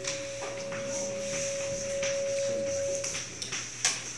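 Chalk scratching on a chalkboard in short repeated strokes, under a steady single-pitched tone that holds for about three seconds and then stops. A sharp click comes near the end.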